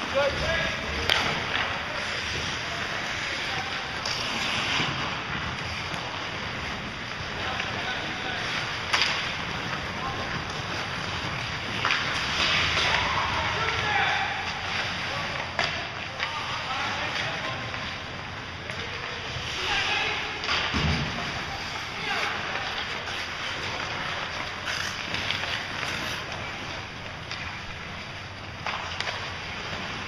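Ice hockey play: skates scraping across the ice and sticks and puck clacking, with sharp knocks about a second in, around four seconds and around nine seconds, and players' voices calling out over the rink's steady noise.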